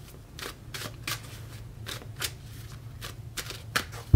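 Tarot cards being handled and shuffled in the hand: about a dozen soft flicks and snaps of card stock at uneven intervals.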